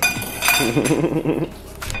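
A man laughing, a quick run of pulsed voiced sounds lasting about a second and a half.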